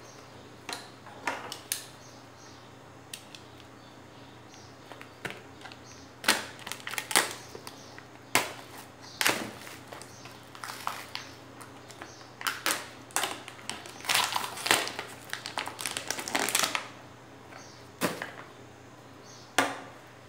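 Hard plastic blister packaging crackling and snapping as it is handled and pried open, in uneven bursts of sharp clicks that come thickest in the middle and later part.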